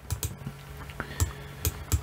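Several light, irregularly spaced clicks from a computer mouse and keyboard in use.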